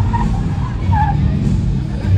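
Loud music from event speakers, with a car engine running underneath.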